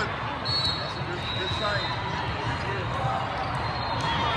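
Echoing ambience of a big indoor volleyball hall: background crowd chatter with balls bouncing and thudding on the courts.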